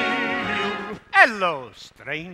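Stage cast singing with the pit band, cutting off about a second in. Then a loud voice call slides steeply down in pitch.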